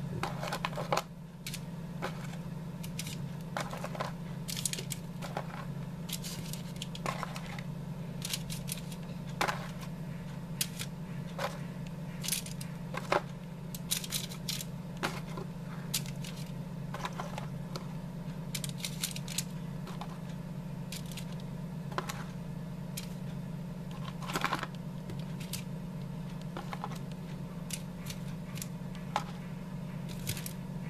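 Frozen pizza snack rolls being set one by one into a foil-lined pan: light irregular clicks and crinkles of foil, sometimes in quick clusters, over a steady low hum.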